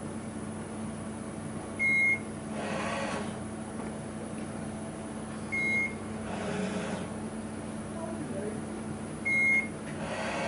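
Mitutoyo BHN706 CNC coordinate measuring machine running a probing cycle: three short, high, steady beeps, one about every three and a half seconds, each marking a touch of the Renishaw touch-trigger probe on the part. After each beep comes a swelling rush of the machine's axes moving to the next point, over a steady low hum.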